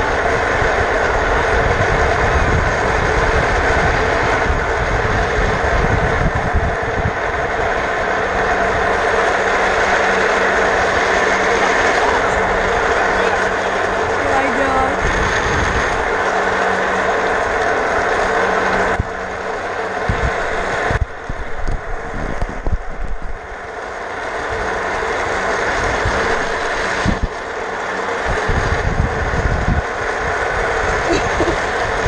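Office chair casters rolling fast over asphalt while the chair is towed behind a golf cart, mixed with wind noise. The noise is loud and steady, and drops off for a few seconds about two-thirds of the way through.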